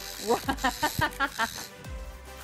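People laughing in quick bursts over background music.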